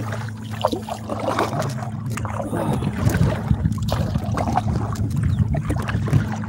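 Water splashing and dripping around a plastic kayak as it is paddled, with irregular small splashes and clicks over a steady low hum.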